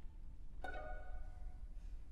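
String orchestra sounds a single short chord about half a second in, which rings away in the hall's reverberation during a sparse, halting passage.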